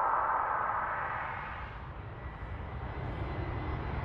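Intro sound effect: a hissing whoosh that fades over the first couple of seconds while a deep rumble builds towards the end.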